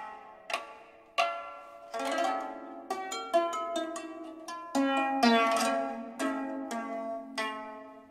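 Replica bronze-age Canaanite asymmetric lyre, its strings plucked in a slow melody: single ringing notes at first, then quicker runs of notes and fuller chords from about two seconds in.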